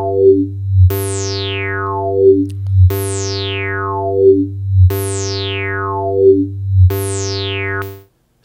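Pulverisateur software synthesizer playing a sustained tone over a steady bass, re-struck about every two seconds, each time with a highly resonant filter sweeping down from bright to dull. The resonance peaks jut out in level, pushing the output into clipping.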